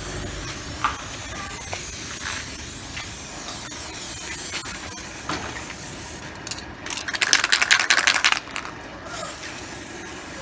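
An aerosol can of matte black spray paint hisses steadily as it sprays. About seven seconds in comes a loud, rapid rattle lasting over a second, the mixing ball knocking inside the can as it is shaken.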